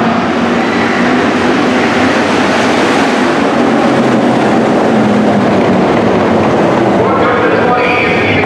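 Dirt-track hobby stock cars racing past close by, their engines running hard under throttle in a loud, steady wall of sound. A voice joins near the end.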